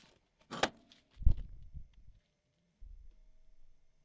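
Handling noise: a brief rustle about half a second in, then a dull knock with a few softer knocks after it, and a faint low rumble near the end.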